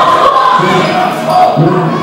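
Dodgeball players shouting and calling across a large indoor hall, with balls bouncing and thudding on the wooden court.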